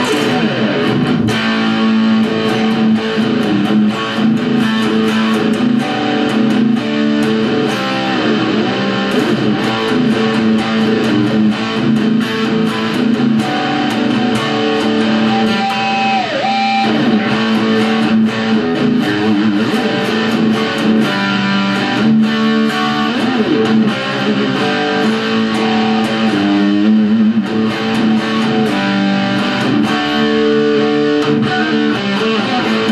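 Parker Nitefly electric guitar played with heavy distortion through a Roland Cube-30X solid-state amp's metal channel: sustained chords and notes, with whammy-bar dives in pitch at about 9 seconds in and again about halfway through.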